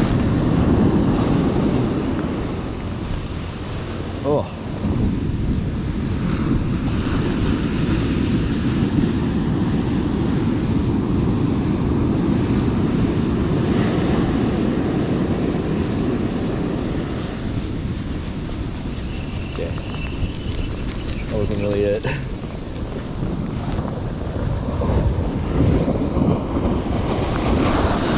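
Wind buffeting the microphone, heavy and steady, over surf breaking and washing up on a sandy beach.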